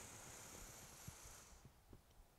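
A faint, slow breath drawn in through the nose, a soft hiss that fades out about a second and a half in. It is a deep Pilates-style inhale into the lower ribs.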